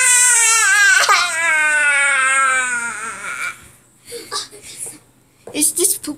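A child's voice giving one long, play-acted wailing cry that slides slowly down in pitch and fades out about three and a half seconds in.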